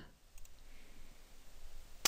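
Faint computer mouse clicks, a quick pair just before a second in, over low room hiss.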